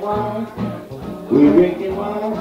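A traditional New Orleans jazz band recording, with horns playing over a bass line of short, evenly repeating notes; a louder held note comes in about a second and a half in.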